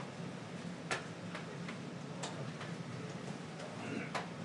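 Scattered sharp clicks at irregular intervals, about eight in four seconds, over a steady low room hum.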